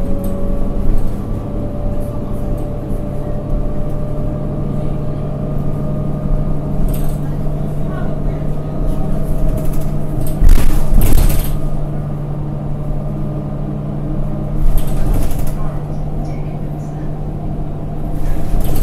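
A New Flyer D40LF diesel city bus heard from inside the cabin: its Cummins ISL9 engine and Allison transmission running with a steady low hum and a faint slowly rising whine early on. Two brief louder rushes of noise come about ten and a half and fifteen seconds in.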